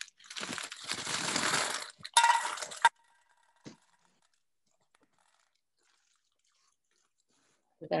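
Small rocks poured from a paper bag into a tin can: a rushing rattle with the bag crinkling, then a shorter, louder clatter about two seconds in with a faint ring from the can.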